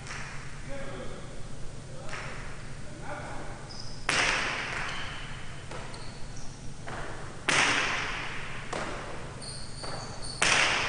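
Jai alai pelota cracking off the walls and floor of the fronton during a rally, two loud hits about three and a half seconds apart ringing out in the hall, with lighter knocks between them. Brief high squeaks come in here and there.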